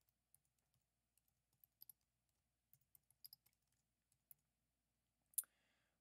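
Faint, scattered computer keyboard key clicks from typing, with one sharper click about five and a half seconds in.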